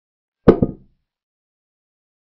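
Chess software's piece-capture sound effect as a knight takes a pawn: a single short wooden-sounding knock, made of two quick strikes with the first louder, about half a second in.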